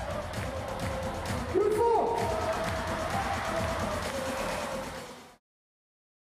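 Music over crowd noise in an arena, with some voices mixed in, cut off abruptly about five seconds in.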